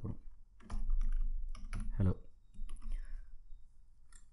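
Typing on a computer keyboard: a run of separate keystroke clicks as a short word is typed, with speech over part of it.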